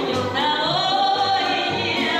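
A female soloist sings a held, rising melodic line with a Russian folk instrument orchestra, plucked strings over a moving bass.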